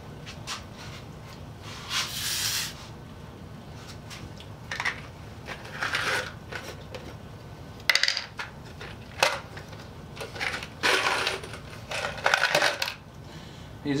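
Inch-and-a-quarter wood screws rattling and clinking against each other in a glass jar as it is handled, opened and picked through, in several short bursts.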